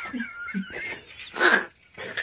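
A man's breathless, wheezing laughter: a thin, high, wavering squeak in the first half second, short breathy catches, then a sharp gasp for air about one and a half seconds in.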